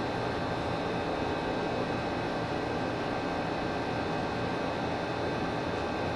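A steady machine hum and hiss with a few faint, unchanging high whines, like a running room appliance; it neither starts, stops nor changes.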